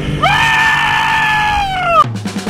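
A person's long, high-pitched excited scream that rises at the start, holds for over a second and falls away near the end.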